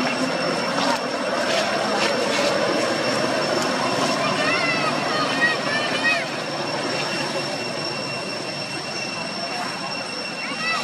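A few short, arching high squeals from a newborn long-tailed macaque about halfway through, over a steady background roar and a constant high thin whine.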